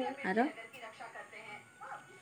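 Speech: a short rising question in the first half second, then faint voices.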